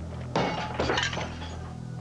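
Glass smashing: one sudden crash about a third of a second in, followed by about a second of clinking shards, over a low steady drone.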